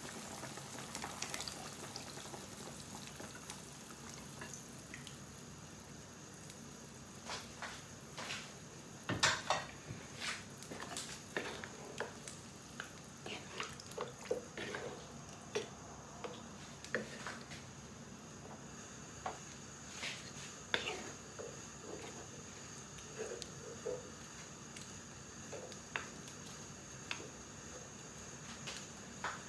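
Wooden spoon stirring a simmering goat stew with coconut milk in a frying pan: a faint steady bubbling throughout, with scattered light knocks and scrapes of the spoon against the pan from about seven seconds in.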